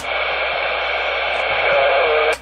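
CB radio giving out a steady rush of static hiss with faint steady tones in it. This is the fuzzy audio that the operator suspects comes from a bad jumper cable.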